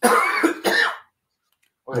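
A person coughing twice in quick succession, the two harsh coughs together lasting about a second.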